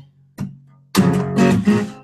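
Acoustic guitar strummed: a low note dying away and a soft stroke about half a second in, then a full chord strummed about a second in that rings on.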